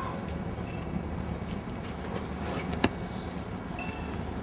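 Steady low background rumble of outdoor ambience, with scattered small clicks and one sharp click a little before three seconds in.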